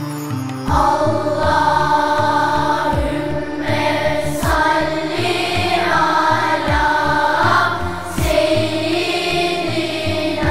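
Turkish ilahi (Islamic devotional hymn): a group of voices sings a melody together over instrumental backing with low drum beats, the voices coming in about a second in.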